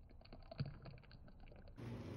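Thick champurrado boiling in a pot: faint, irregular popping and clicking as bubbles burst, with one slightly louder pop about half a second in.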